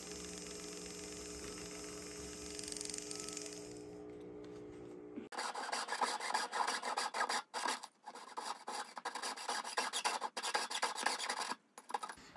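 A jeweler's rotary handpiece runs with a steady hum while its burr works a marked spot on a small silver pendant. About five seconds in the hum stops and a jeweler's saw blade cuts through the silver in short, uneven strokes.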